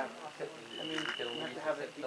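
A high, steady call from a night-calling animal, held for about two-thirds of a second in the middle and repeating at intervals, over people talking.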